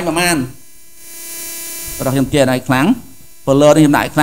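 A man talking in short phrases, and in the pause about a second in a steady electrical hum with a faint hiss underneath.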